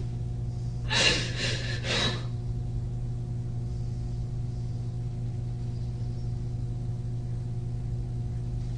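A woman crying: a short run of three or four gasping breaths about a second in. Under it a steady low electrical hum.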